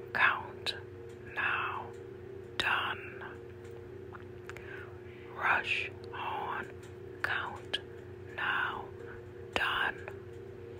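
A voice whispering the switchwords 'rush, on, count, now, done' in a slow repeated chant, about one word a second, over a steady low hum.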